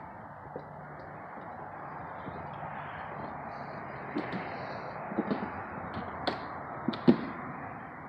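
Footsteps on a debris-strewn concrete floor over a steady rushing background noise, with several sharp clicks and knocks in the second half, the loudest a little before the end.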